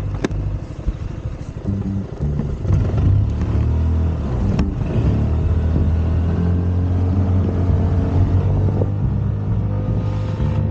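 Scomadi TT125i's 125 cc single-cylinder four-stroke scooter engine running, louder and steadier from about three seconds in as the scooter pulls away, with a sharp click near the start and another about halfway.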